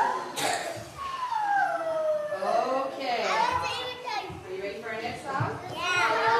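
Young children's voices chattering and calling out, overlapping and unclear, with one long drawn-out voice gliding down in pitch about a second in.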